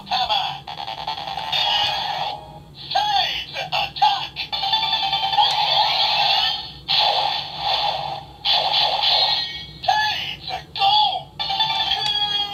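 Electronic sound effects, music and voice calls playing from an electronic toy's small built-in speaker. The sound is thin and tinny and comes in short bursts, with brief gaps between them.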